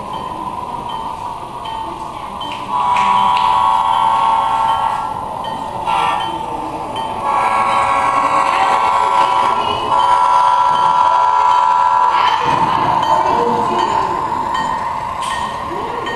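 An HO-scale diesel locomotive's DCC sound decoder blows its chime horn in three long blasts and one short one, starting about three seconds in. Under the blasts is the steady sound of the model locomotive running.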